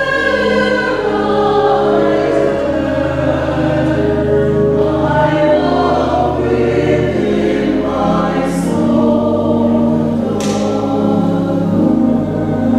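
Mixed church choir singing an introit in parts over sustained organ accompaniment, the organ's low bass notes held and changing every second or two.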